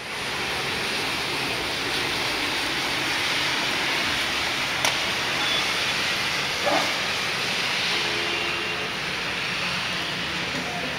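Heavy rain falling in a steady rush, with a sharp click about five seconds in and a brief knock a couple of seconds later.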